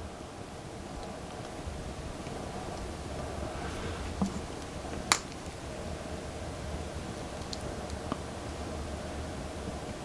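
Small plastic figure parts and metal tweezers being handled: light rustling and a few small clicks, the sharpest about five seconds in, over a steady low room hum.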